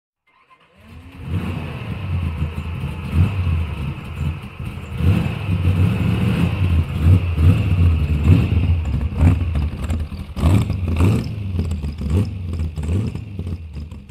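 A car engine starts about a second in, then runs and revs unevenly, rising and falling in loudness.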